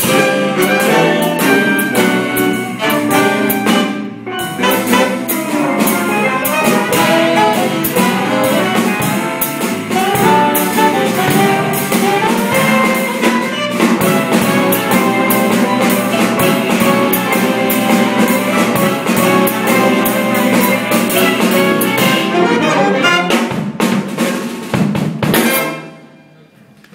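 A live jazz ensemble plays an up-tempo passage, with steel pan, a saxophone section, low brass and a drum kit. The tune closes on a final accented hit near the end.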